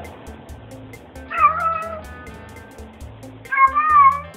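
Domestic cat meowing twice, one call about a second in and another near the end, over background music with a steady beat.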